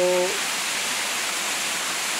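Small waterfall splashing down a rock face: a steady, even rush of falling water.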